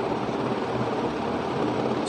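Steady, even hiss of background room noise, unchanging through the pause.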